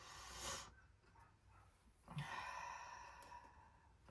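A faint breathy exhale, then about two seconds in, a longer voiced sigh that fades away.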